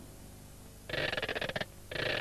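Clockwork ratchet sound effect, the whirr of a wind-up key mechanism: a fast run of clicks sets in about halfway through, breaks off briefly, and starts again near the end.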